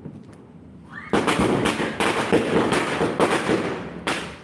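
Firecrackers going off in rapid succession, a dense crackling barrage that starts about a second in and runs for nearly three seconds.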